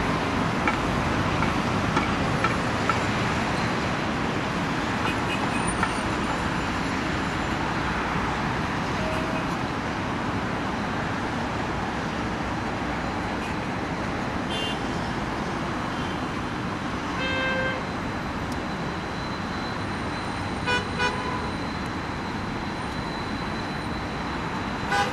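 Steady hum of city road traffic, with several short car-horn toots in the second half.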